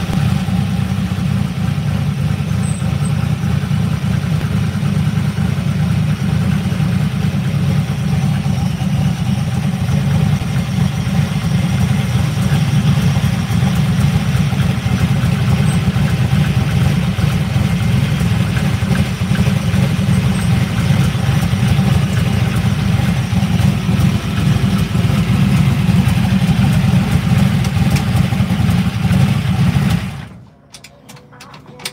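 Turbocharged Mustang drag car's engine idling steadily as the car rolls slowly, a deep low rumble heard from inside the stripped cabin.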